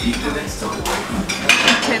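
A fork clinks and scrapes on a ceramic plate of food, with a few sharp clinks, against the clatter and chatter of a busy restaurant dining room.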